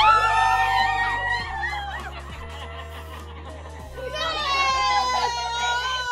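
Women shrieking and squealing excitedly: one long high cry at the start and another long wavering squeal from about four seconds in, over background music.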